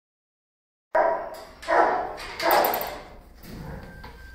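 A dog barking three times in quick succession, starting about a second in, then quieter.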